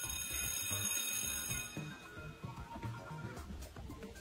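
Wine glasses clinking in a toast, with a bright high ringing that starts at once and fades after about a second and a half, over background music.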